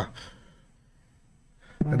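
A man's voice trails off into a short breath out, followed by about a second of near silence before he starts speaking again near the end.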